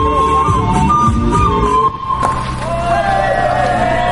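A band playing morenada dance music, with a held melody over a steady low beat, breaks off about two seconds in. Voices of people talking follow.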